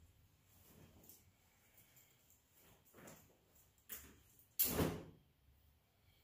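Cloth rustling as a jacket is pulled off the shoulders and arms: soft rustles at first, a small sharp tick just before four seconds, then a louder swish of about half a second, the loudest sound, near the end.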